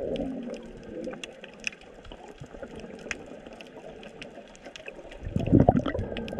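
Underwater sound on a coral reef: a steady scatter of sharp clicks and crackles, with a louder low gurgling rush of bubbling water about five seconds in.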